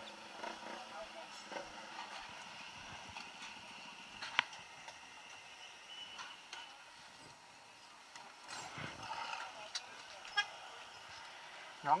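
Faint night street background of passing traffic and distant voices, with a sharp click about four seconds in and a short, high car horn toot about six seconds in.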